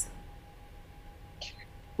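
Quiet pause on a video-call line: low steady background hiss with a faint thin hum, and about one and a half seconds in a short, soft breath-like hiss.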